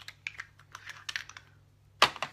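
A quick, irregular run of light clicks and taps from small objects being handled on a tabletop, lasting about a second and a half.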